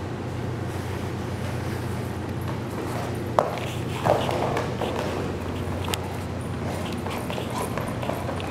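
A Great Pyrenees' paws running on rubber floor matting over a steady low hum, with a sharp knock about three and a half seconds in.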